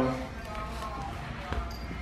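A chow chow puppy's paws landing on hard marble stairs as it hops down, with a soft knock about one and a half seconds in.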